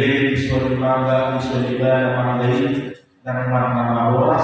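A man's voice intoning in long, level-held notes, loud and clear: two sustained phrases with a short break about three seconds in.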